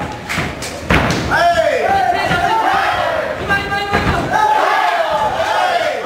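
Blows landing in a kickboxing bout: several sharp thuds, the loudest about a second in and another about four seconds in, over shouts from the crowd and corners.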